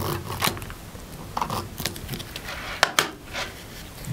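Adhesive roller (tape runner) drawn along the edges of a die-cut cardstock piece in several short rasping strokes, laying down tape adhesive.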